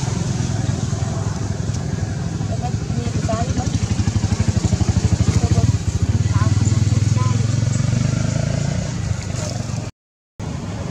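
An engine running at idle with a steady low pulsing throb, growing louder in the middle, then cutting off suddenly near the end.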